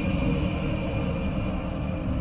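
A low, steady rumbling drone from an intro jingle's soundtrack, fading slightly, left ringing after a heavy-metal riff cuts off.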